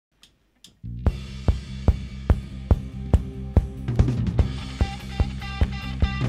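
Instrumental intro of a live worship band: after two faint clicks, a drum kit comes in over a sustained low bass and keyboard note, keeping a steady beat of about two and a half hits a second. More instruments join about four seconds in.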